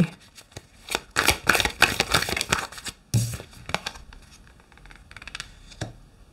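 Tarot cards being handled as one is drawn from the deck and laid on a wooden table: a quick run of crisp card flicks and rustles over the first few seconds.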